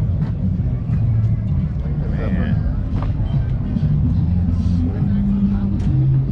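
A steady low engine drone, with faint voices of people around it.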